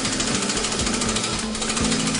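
Impact wrench running steadily with a rapid hammering rattle as it drives the threaded spindle of a KLANN press tool.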